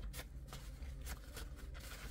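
Faint rustling of a paper towel being handled as a paint-covered stirring tool is wiped on it.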